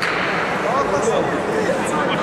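Several voices shouting and calling out over one another in a large sports hall: coaches and supporters yelling during a karate bout. A sharp click comes right at the start.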